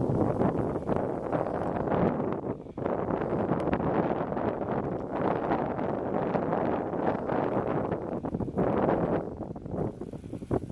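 Wind buffeting the camera microphone, a rough rumbling noise that rises and falls in gusts.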